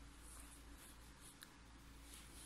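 Very faint rustling scratches of a fine needle and thread being drawn through cloth while pearl beads are stitched on, with one small click about a second and a half in.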